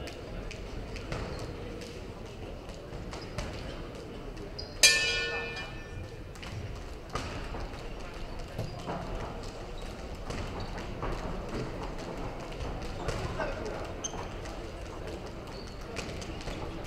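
Boxing ring bell struck once about five seconds in, a single ringing stroke that dies away over a second or so, starting the round. After it come scattered light thuds of footwork and gloved punches over the murmur of the hall.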